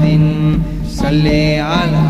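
A man singing a Tamil Islamic devotional song: a long held note, then a wavering, ornamented phrase about halfway through.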